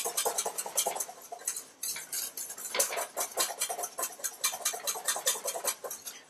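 Wire whisk beating egg-yolk sabayon in a stainless steel bowl over a double boiler: a quick, even clatter of the whisk against the bowl, several strokes a second, as the yolk foam thickens.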